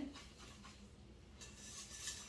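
A wire whisk stirring a creamy pie filling in a glass mixing bowl, heard only as faint soft scrapes and light ticks against the glass.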